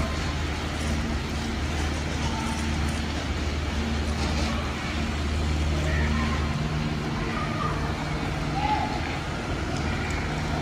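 Water spraying from a garden hose onto plants and soil, with a steady low mechanical hum underneath.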